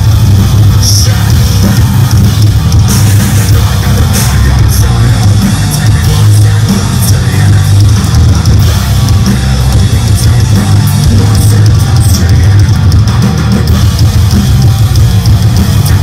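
Live band playing loud heavy rock, with electric guitar and drum kit.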